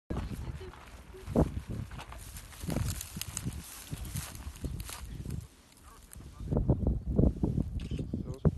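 Indistinct voices with irregular knocks and rustles; busier toward the end.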